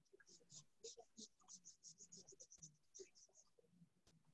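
Near silence in the meeting room's microphones: faint, indistinct voices and a quick run of light scratching for about the first three seconds, as of a pen on paper.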